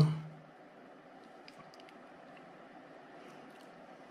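Quiet room tone: a faint steady hiss, with a few faint ticks about a second and a half in and again near the end.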